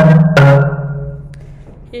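Marimba struck with yarn mallets: the last two notes of a descending D-flat major scale, under half a second apart, the final low D-flat ringing out and fading over about a second and a half.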